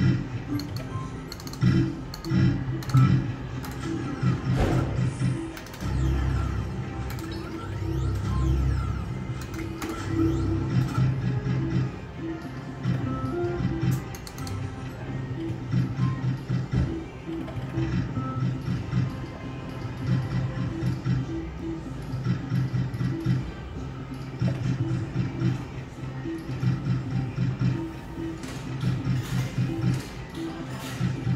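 Novoline video slot machine playing its electronic reel-spin tones and short jingles, repeating spin after spin. There is a deeper rumble for a few seconds near the start.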